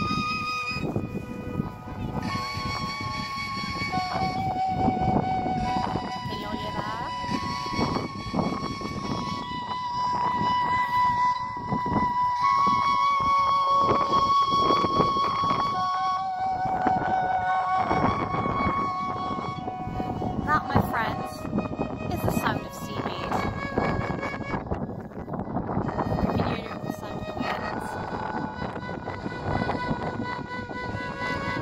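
Plant Choir biodata sonification device, its electrodes clipped to a piece of seaweed, turning the seaweed's electrical signals into slow synthesized notes. The notes are held and slightly wavering, stepping from one pitch to another every second or two. Wind buffets the microphone underneath.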